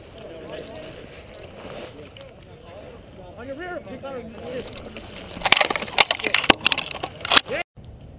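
Dry brush crackling and snapping close to the microphone as the camera wearer shifts through it, a loud irregular burst of crackles and knocks in the second half that cuts off abruptly just before the end.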